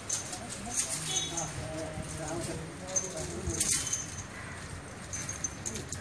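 Metal chains on a walking temple elephant's legs clinking and jingling at irregular moments, the loudest jingle a little past the middle, over low murmuring voices.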